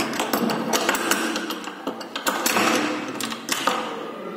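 Handling noise on the recording phone: rapid, irregular clicks and knocks over a rustling, scraping noise, thinning out near the end.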